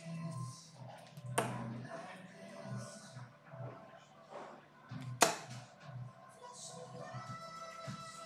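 Two darts striking a bristle dartboard: two sharp thuds about four seconds apart.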